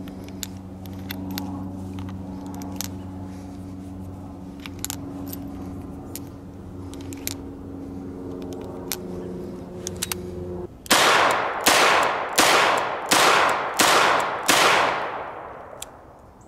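Small metallic clicks of .38 Special cartridges going into the cylinder of a Smith & Wesson Model 64 revolver. Then the revolver fires six shots in quick succession, about two-thirds of a second apart, each ringing out briefly.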